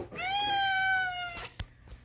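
A domestic cat giving one long meow that sags a little in pitch before it stops.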